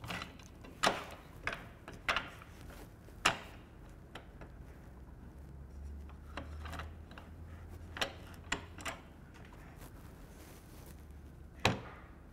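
Scattered sharp clicks and knocks of a plunge router being handled and its parallel fence adjusted on its guide rods, with the motor switched off.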